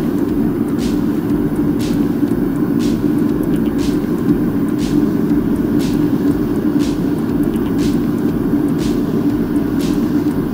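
Propane-fired smelting furnace burner running flat out with a steady, deep roar. Irregular light ticks sound over it every second or so.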